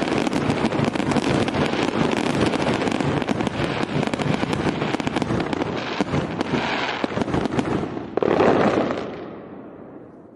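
Aerial fireworks display: many shells bursting together in a dense, continuous crackle. There is a louder burst about eight seconds in, then the sound dies away near the end.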